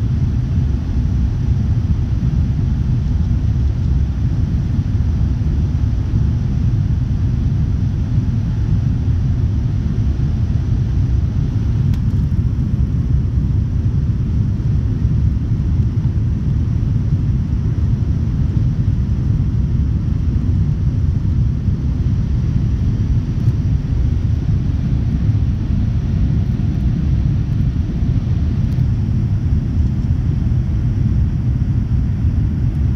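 Steady low rumble of a Boeing 787-9's engines and airflow, heard inside the cabin as the airliner climbs after takeoff.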